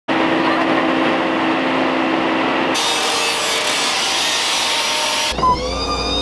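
Stand-on leaf blower running, a steady rush of air over a low engine hum. About three seconds in, the sound switches to a brighter, harsher hiss. Near the end a pitched, wavering sound comes in over it.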